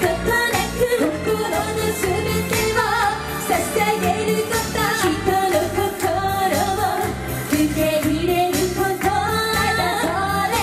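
A female vocal group singing a Japanese pop song live into microphones over pop backing music with a steady beat.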